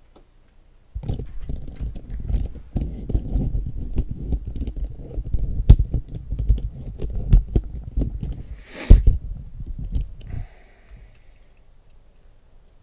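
Typing on a computer keyboard: a quick, dense run of dull keystrokes that starts about a second in and stops shortly before the end, with one louder burst of noise near the end.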